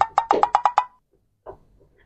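A quick run of about seven evenly spaced wood-block knocks, roughly eight a second, over a faint ringing tone. They stop abruptly under a second in, followed by near silence and one soft knock.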